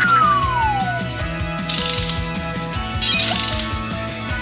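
Cartoon sound effects over background music with a steady beat: a falling whistle at the start, then two short bursts of ratcheting, about two and three seconds in, as an animated wrench works on the truck's wheels.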